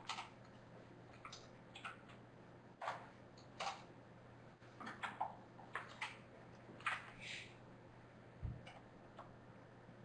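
Scattered light clicks and taps at irregular intervals, the loudest about seven seconds in, over a steady low hum in a quiet room.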